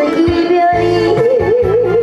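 A woman singing a Korean trot song into a microphone over instrumental accompaniment. She glides between notes, then holds a long note with a wide vibrato through the second half.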